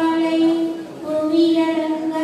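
A woman singing a devotional song unaccompanied, holding long steady notes with a short break about halfway.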